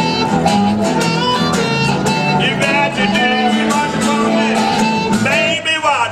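Live blues instrumental: a blues harmonica plays sustained, bending notes over strummed acoustic guitar and electric guitar.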